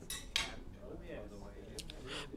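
Cutlery clinking against a dish, two short clinks in the first half-second, over a faint background murmur of voices.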